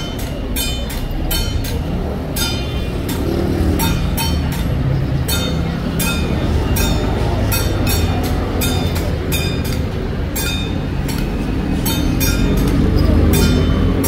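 Temple-procession metal percussion struck in a steady beat of about two clangs a second, each with a bright ringing overtone, over a continuous low rumble, accompanying a Ba Jia Jiang troupe's ritual steps.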